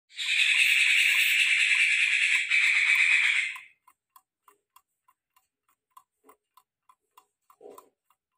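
A loud, steady hiss for about the first three and a half seconds, then faint, even ticking at about three ticks a second, with a soft knock near the end.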